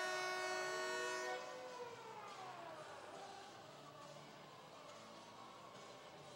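Arena goal horn sounding for a goal: a chord of several steady tones that stops about a second and a half in, its pitch then sliding down as it fades away.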